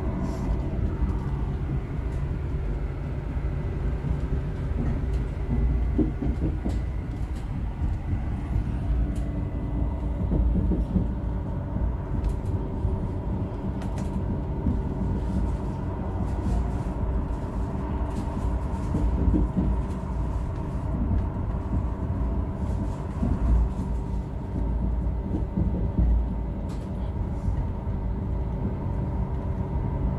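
tpc electric railcar running along the track, heard from the driver's cab: a continuous rumble of wheels on rail under a steady motor whine, with occasional short clicks.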